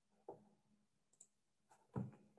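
Near silence: room tone over a computer microphone, broken by two faint short clicks, one about a third of a second in and one near the end.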